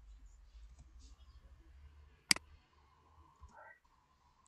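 A single sharp computer mouse click about two seconds in, with a few faint ticks before it, over a faint low hum.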